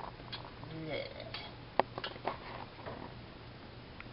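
Metal kitchen utensils clinking and scraping against a frying pan and a glass jar of sun-dried tomatoes, in a handful of separate clinks with the sharpest a little under two seconds in. A low steady hum runs underneath.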